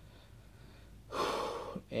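Quiet room tone, then about a second in a man takes one quick, audible breath in through the mouth, lasting under a second, just before he speaks again.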